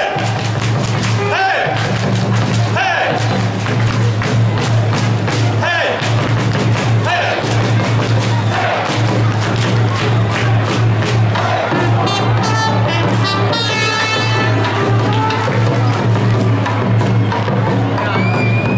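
Ballpark cheering: amplified music with a steady low hum and repeated drumbeats, with crowd voices chanting and calling over it.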